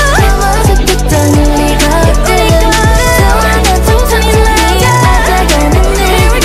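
K-pop song with female vocals over a heavy bass line and a steady drum beat.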